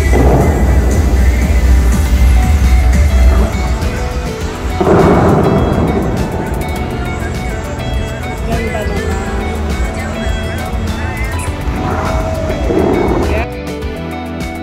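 Bellagio fountain show heard live: the show's music over the loudspeakers mixed with the low rumble and rush of the water jets firing, with surges of spray noise at the start, about five seconds in and again near the end. The level drops just before the end.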